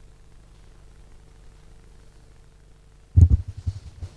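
Faint steady room hum with a thin steady tone, then about three seconds in a quick run of loud low thumps and rumbles, typical of a handheld microphone being handled as it is passed on.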